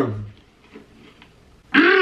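A person's voice: a voiced sound trails off at the start, then after a quieter stretch a short, loud voiced sound rises and falls in pitch near the end.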